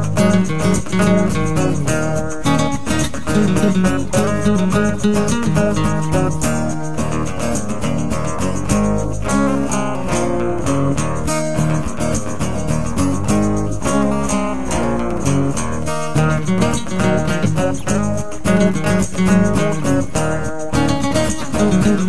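Acoustic guitar music, strummed and picked, with no singing.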